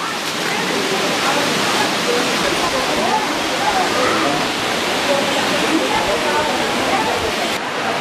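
A steady rush of running water, with faint voices beneath it.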